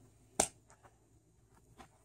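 A single sharp slap about half a second in, from bare feet landing on a carpeted floor at the end of a gainer flip, followed by a few faint ticks.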